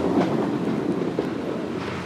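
A luge sled's steel runners rumbling on the ice track, fading steadily as the sled runs away down the chute.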